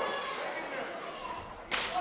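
One sharp, loud slap about one and a half seconds in: an open-hand strike landing on a wrestler's bare skin, over crowd chatter in a large hall.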